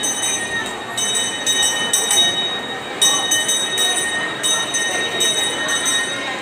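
Squeaking shopping-cart wheel: a high-pitched squeal with overtones that starts and stops several times as the cart rolls, over the background hubbub of a busy supermarket.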